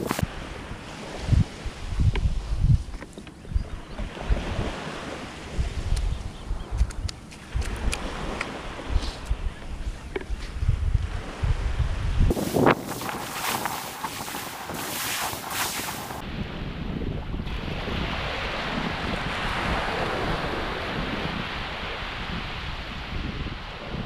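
Wind buffeting the microphone in gusts over the wash of small waves breaking on the shore. About halfway through a louder rush of wind noise lasts a few seconds, then gives way to a steady hiss of wind and surf.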